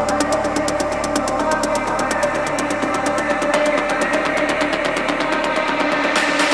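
Ethnic deep house music in a breakdown: a sustained synth pad with a fast, even ticking of high percussion and no kick drum.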